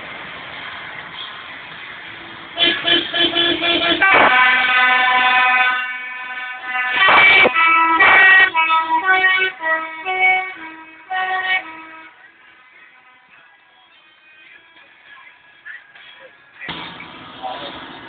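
A musical vehicle horn, most likely on one of the vintage trucks, playing a tune. It starts about two and a half seconds in with quick repeated toots, holds one long note, and then runs a string of short notes that step up and down in pitch. It falls quieter after about twelve seconds.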